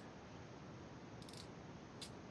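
Near silence: faint room hiss, with a brief faint clicking of the wire harness and connectors being handled just past a second in.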